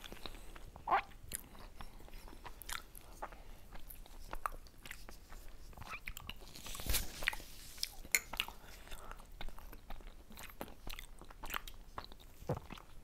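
Close-miked chewing of soft pan-fried dumplings filled with potato and mushroom by two people: wet mouth clicks and smacks throughout, with a louder, noisier sound about seven seconds in.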